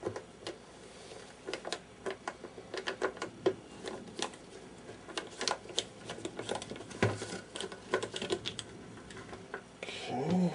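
Irregular clicks, taps and small scrapes of a screwdriver and fingers working at the back panel of a mid-1950s Admiral 5R37 table radio to get it off, with a heavier knock about seven seconds in.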